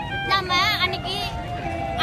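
A young woman speaking loudly in Tamil in short bursts, with background music of long held notes droning steadily beneath her voice.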